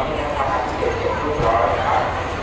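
Mixed voices of a crowd of shoppers in a busy market hall, with short, high, wavering calls about half a second in and again near the end.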